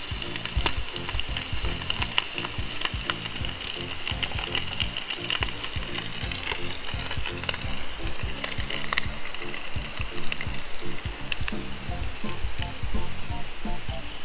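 Food frying in a pan: a steady sizzle with frequent small crackles.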